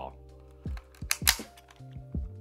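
Soft background music with a held chord and a low repeating thump. A little past a second in comes a brief clatter as the die-cast toy morpher is set down.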